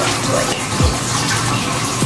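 Water running steadily from a bathroom tap, a constant rush.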